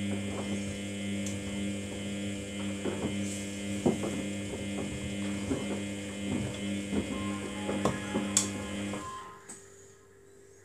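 Samsung front-loading washing machine tumbling a wet load. A steady motor hum and whine runs under irregular splashes and soft thuds of wet laundry, then stops about nine seconds in.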